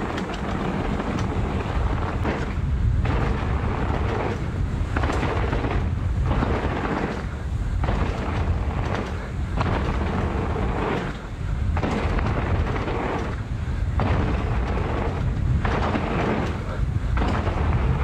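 Mountain bike being ridden down a trail: wind rumbling on the bike-mounted or helmet camera microphone, with surges of tyre and rattle noise every second or so as the bike rolls over the trail surface.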